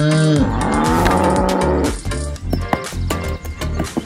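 A single cow moo near the start, its pitch rising and then falling over about a second, over background music with a steady beat.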